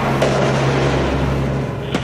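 Field radio static: a loud hiss that cuts in suddenly between transmissions and cuts off with a click at the end, over a low sustained musical drone.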